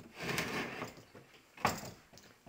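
A broken white panel door being moved by hand: a soft scraping rub, then a single knock about one and a half seconds in.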